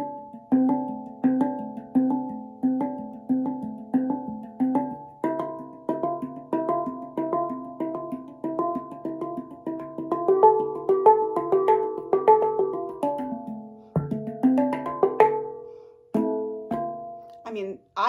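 Handpan played with the hands, with a slightly metallic ring. Single struck notes ring on at an even pace of about three every two seconds, then a quicker pattern of overlapping notes follows. There is a short break about fourteen seconds in, and then a few more notes.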